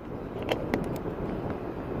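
Car interior road and engine rumble while driving, with a few light clicks and knocks about half a second to a second in.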